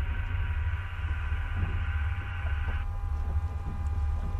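Steady low rumble with a hum of several steady tones over it, the hum cutting off about three seconds in: the cabin sound of a small submersible at the surface, its fans and electrics running.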